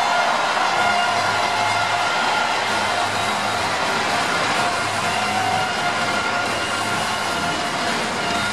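Steady din of a large stadium crowd, with music carrying a pulsing bass beat playing over it.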